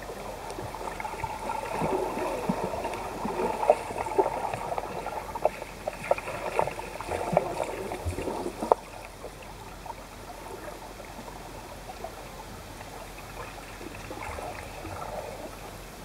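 Pool water heard underwater, stirred by a swimmer's kicking feet: muffled churning with many sharp clicks, louder through the first half, then settling to a steady, quieter water hiss.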